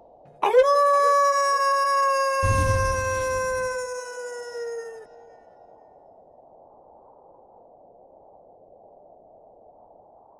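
A single wolf howl used as a sound effect: it swoops up to a long held note, then slides slowly lower and fades out about five seconds in. A low rumble runs under the middle of the howl.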